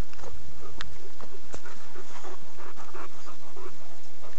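A boxer dog panting close to the microphone.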